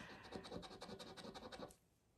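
A round scratcher disc is rubbed rapidly back and forth across a scratch card, scraping off the coating in quick, faint strokes that stop shortly before the end.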